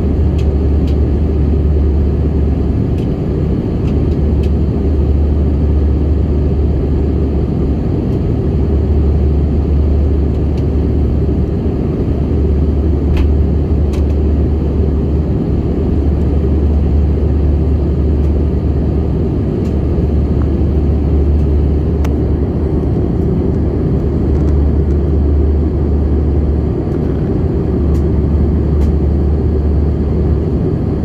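Airbus A319 cabin noise in flight, heard inside the cabin at a window seat: a steady roar of the CFM56 turbofan engines and rushing air, over a strong low rumble, with a few faint ticks.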